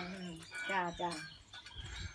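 A voice talking in the background, with short vowel-like bursts through the first second.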